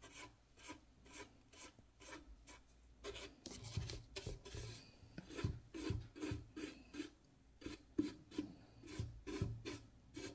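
Faint, rapid short strokes of a flat bristle paintbrush scrubbing paint onto a painted wooden lantern to distress the finish, about three strokes a second. The strokes get louder from about three seconds in.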